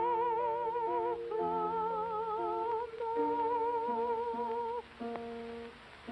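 A woman's high voice singing a slow melody in long held notes with strong vibrato, over soft piano accompaniment. Near the end the voice stops and only quiet piano notes remain.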